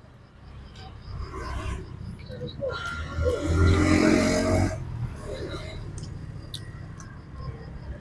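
Eating crispy fried duck by hand: small crackles and clicks of the crisp skin being pulled apart and chewed. About three seconds in comes a low voiced sound, under two seconds long, made with the lips closed and the mouth full.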